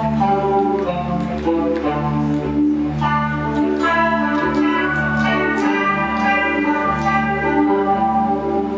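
Electric guitar played through an AmpliTube 3 Jazz Amp 120 amp model with chorus, picking a melodic line over sustained low notes from a backing track.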